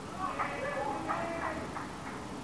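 Unintelligible voices calling out over steady outdoor background noise.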